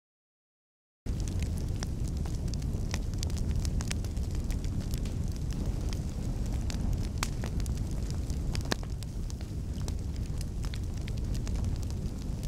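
Fire roaring, with frequent sharp crackles and pops. It starts suddenly about a second in.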